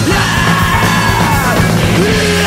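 Post-hardcore band playing loud and dense: distorted guitar, bass and drums, with yelled vocals.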